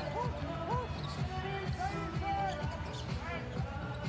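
Basketball bouncing on a hardwood court during live game play, repeated knocks with music playing underneath.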